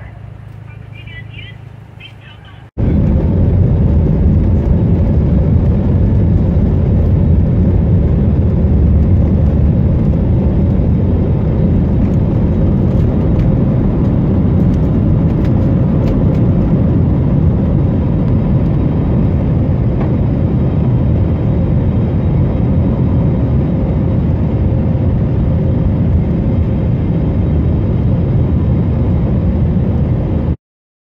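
Jet airliner engines at takeoff power heard from inside the cabin beside the wing: a loud, steady, deep rushing noise with a faint steady tone. It begins abruptly about three seconds in, after a quieter stretch of vehicle interior with a man's voice.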